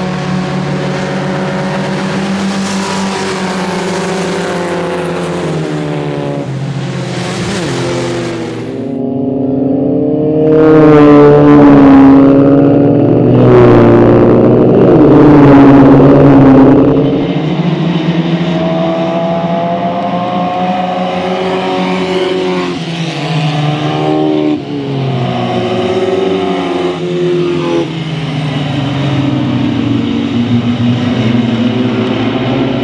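Historic single-seater racing cars' engines running hard on track, several cars heard at once with engine notes rising and falling as they accelerate and lift. About a third of the way in a car comes close and gets much louder, then its note drops away as it passes.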